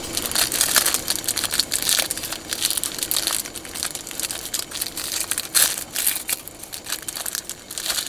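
Cellophane wrapper of a disposable plastic fork crinkling as hands tear it open, with a foil packet rustling in the same hands. The crackling is dense and irregular, with louder crumples in the first two seconds, just after three seconds, and at about five and a half seconds.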